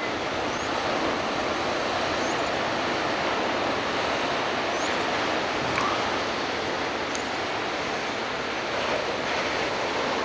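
Steady wash of ocean surf breaking on a sandy beach, mixed with some wind.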